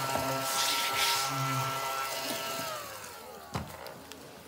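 Small electric hand vacuum running with a steady whine while it sucks up scratch-card shavings, then winding down in pitch as it is switched off about three seconds in. A short knock follows near the end.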